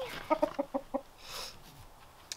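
Rooster clucking: a quick run of about six short clucks in the first second, followed by a brief soft rustle.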